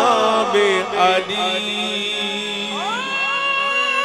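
Qawwali music: a male lead voice sings an ornamented, wavering line over harmonium, which then holds steady notes. Near the end a voice slides up into a long held note.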